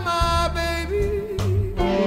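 Slow blues music from a band: a steady bass under a lead line that holds and wavers in pitch about halfway through.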